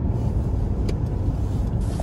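Steady low road and engine rumble heard inside a car's cabin while it drives along at highway speed, with a single faint tick about a second in.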